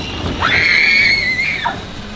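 A child's long, high-pitched squeal, held steady for about a second before dropping away.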